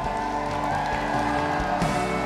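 Soft live band music with an electric guitar, playing sustained chords under the pause in the talk.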